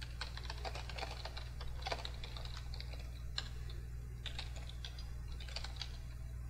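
Typing on a computer keyboard: irregular runs of quick key clicks with short pauses between them, over a steady low hum.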